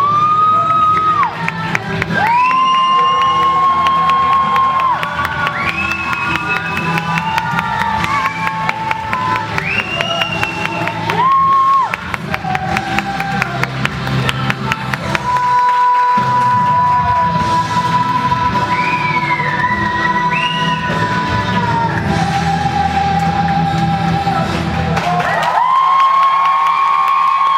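A song playing, with long held notes that scoop up in pitch over a steady low bass line, and an audience cheering and whooping over it. The bass drops out near the end.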